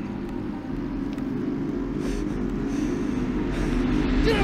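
Low, steady rumbling drone made of several sustained deep tones, slowly growing louder.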